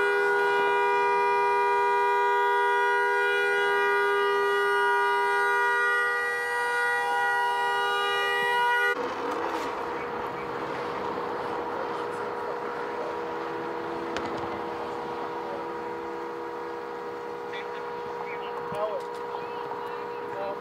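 A car horn sounding continuously on two steady notes, loud and unbroken, then cut off abruptly about nine seconds in. After that a fainter steady tone carries on over a noisy background.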